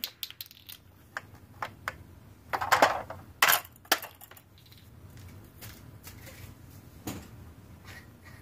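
Hard plastic toy ice cream truck being handled and turned: a run of light clicks and knocks of plastic, loudest in a cluster about two and a half to four seconds in, with another knock near the end.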